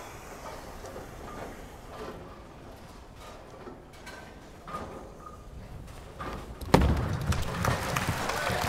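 Quiet bowling-alley ambience, then near the end a sharp thud as a bowling ball is released onto the lane, followed by the low rumble of the ball rolling down the lane.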